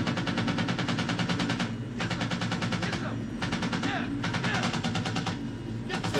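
A helicopter door gunner's M60 machine gun firing in long rapid bursts, about ten rounds a second, with a few brief pauses, over the steady hum of the helicopter, heard from a war-film soundtrack.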